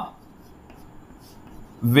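Faint chalk writing on a chalkboard, a soft, even scratching while the words are written, with a man's voice starting again near the end.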